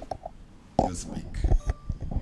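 Quiet, murmured speech with a few soft knocks from a hand-held microphone as it is passed from one person to another.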